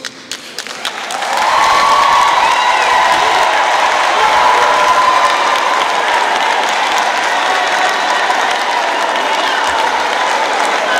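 Audience applause in a hall: a few scattered claps, then full clapping that swells about a second in and holds steady, with cheering and a long held call from the crowd over it.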